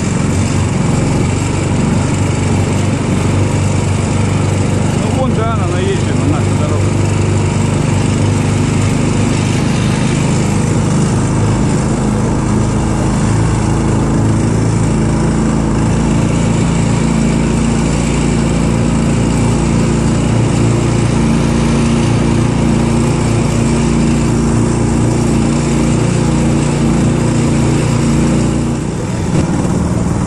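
Engine of a karakat, a homemade off-road vehicle on low-pressure tyres, running steadily under load as it drives across rough grass, easing off briefly near the end.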